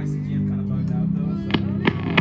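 Acoustic guitar played through an amplifier, sustained notes ringing, with a few sharp clicks in the second half.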